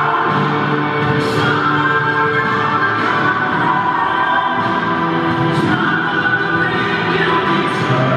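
Music with long held sung notes, played over an ice rink's loudspeakers as accompaniment to a synchronized skating routine.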